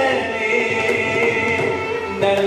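Male Carnatic vocalist singing in raga Bhairavi, holding a long note, accompanied by violin and mridangam.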